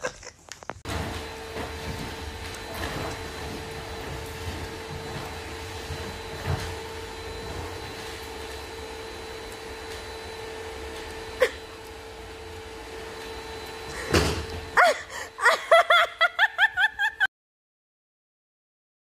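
Canister vacuum cleaner running with a steady hum and one sharp click partway through, then cutting off about fourteen seconds in. A few seconds of short vocal sounds follow, and the sound stops abruptly.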